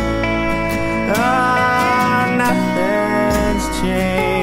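Instrumental break of a 1991 rock studio recording: a slide guitar line whose notes glide up into pitch about a second in, over strummed acoustic guitar, bass and drums.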